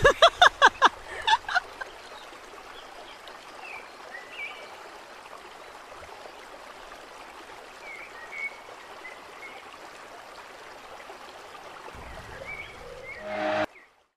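A horse whinnies once at the start, a quick run of pulses falling in pitch over about a second and a half. After it comes a low steady outdoor background with a few faint chirps, and a short louder sound just before the audio cuts off.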